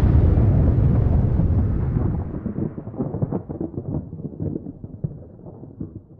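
Deep rumble of an explosion sound effect dying away. Its high end fades first, and it breaks into scattered crackles as it fades out over the last few seconds.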